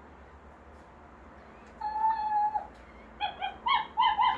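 Interactive plush toy puppy playing its dog sounds: one level, held whine of under a second, then three short yips near the end.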